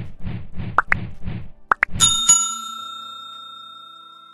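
Intro jingle music with a beat of about three hits a second and a few quick rising pops. About two seconds in, a bell chime strikes and rings on, fading slowly: a subscribe-bell notification sound effect.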